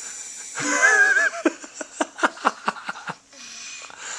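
A toddler's brief wavering vocal sound just under a second in, followed by a quick run of short, sharp breaths or taps, about four a second, that stops about three seconds in.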